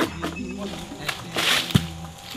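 A jackfruit knocked loose with a pole, rustling briefly through the leaves and then landing with one sharp thud near the end, over background music.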